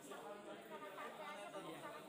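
Indistinct chatter of several people talking at once in a room, with no single voice standing out.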